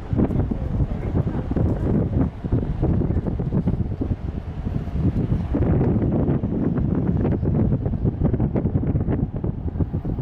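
Wind buffeting the microphone: a loud, gusting low rumble that rises and falls.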